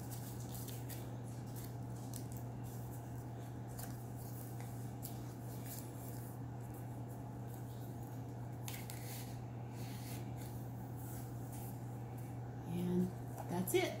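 Paper pages and tucked-in tags of a handmade journal being turned and handled, light paper rustling, over a steady low hum.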